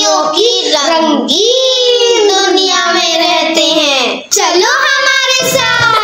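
A child's voice singing a jingle in long, drawn-out notes that glide up and down. About five seconds in, backing music with a steady low beat comes in.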